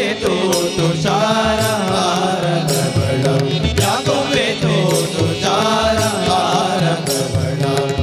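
Men singing a Hindu devotional bhajan together, accompanied by a tabla and small hand cymbals struck in rhythm.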